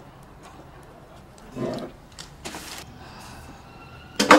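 Low room tone with a few brief rustles and a soft knock: handling noise as a small Edison phonograph is brought out and held.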